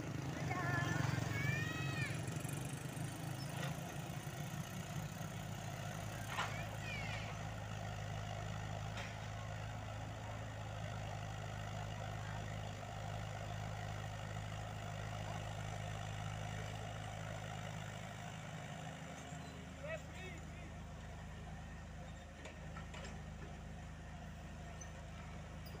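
Diesel engines of a Komatsu PC78UU mini excavator and a dump truck running steadily while the excavator digs and loads dirt. The engine note shifts about 19 seconds in.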